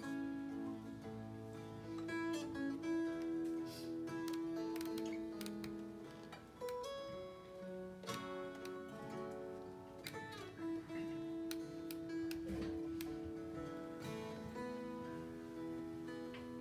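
Acoustic guitar and baritone McSpadden mountain dulcimer, tuned EEA, playing an instrumental duet of plucked notes over long-held tones.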